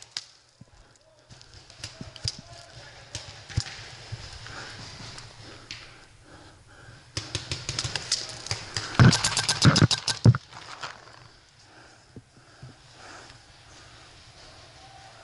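Footsteps crunching through dry leaf litter, with scattered cracks of twigs. About seven seconds in, a fast, even string of sharp paintball marker shots starts, at roughly ten a second; it is loudest and mixed with heavy thuds around nine to ten seconds and stops about ten seconds in.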